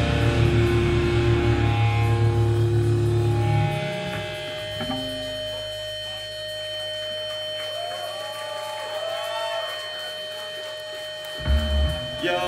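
Live heavy hardcore band: distorted electric guitar and bass chords ringing out, dropping away after about four seconds. Steady high amp feedback tones linger, with faint shouts. A loud low hit comes near the end.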